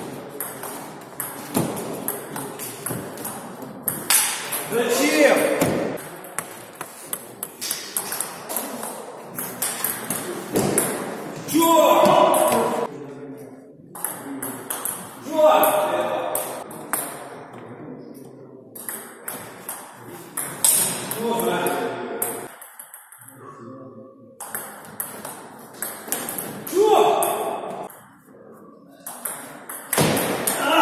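Table tennis rallies: the ball clicks sharply off the bats and the table in quick succession, in bursts of play with short breaks between points.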